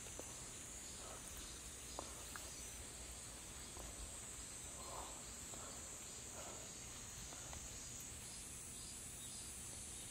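A faint chorus of insects calling outdoors, a steady high-pitched drone, with a few soft footsteps and scuffs on stony soil.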